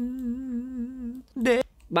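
Recorded bolero vocal playing back, holding one long sung note with a steady vibrato that fades out just after a second in. It stays clean despite a treble boost of about 9 dB around 3–7 kHz on the SSL EV2 channel strip. A short spoken word comes near the end.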